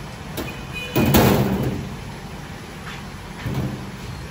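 Heavy round metal lid of a giant cooking pot being slid and lifted off. There is a sharp click early, then a loud metal scrape about a second in, and softer knocks near the end.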